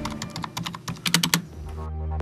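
Fast typing on a computer keyboard: a quick, irregular run of key clicks for about a second and a half. Low music comes in near the end.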